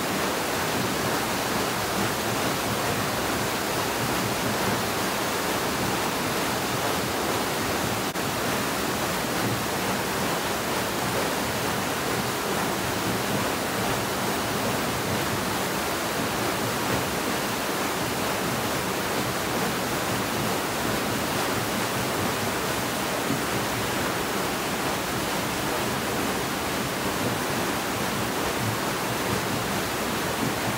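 Steady rush of water pouring through the millrace beneath the mill's wooden waterwheel.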